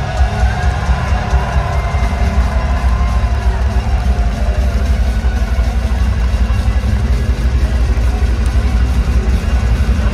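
Heavy metal band playing live in an arena, heard from within the crowd: long held lead notes that slowly bend, over heavy, rapid drums and bass.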